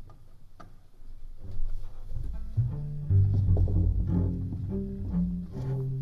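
Excerpt from a networked new-music piece: low, dense, sustained drones in several layers, shifting in pitch, that build up about a second in. The drones come from contrabass clarinets, each sounding the remote clarinet's sound inside itself, together with synthesized tones resonating within the instruments.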